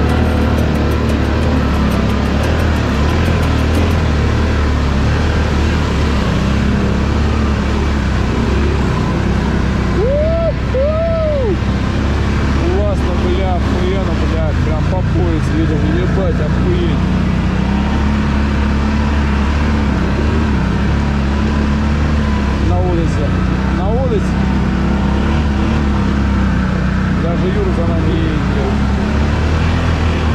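Quad bike (ATV) engine running steadily under load through a flooded, muddy track. Short squeaky rising-and-falling tones come over it now and then, about a third of the way in and again later.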